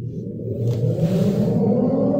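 A low, engine-like rumble that swells in loudness.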